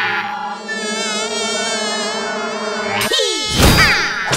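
Cartoon fly-buzz sound effect: a steady, slightly wavering buzz of wings for about three seconds, then a quick falling sweep and a louder burst near the end.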